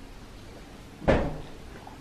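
A single loud thump, a knock against a hard surface, about a second in, dying away quickly.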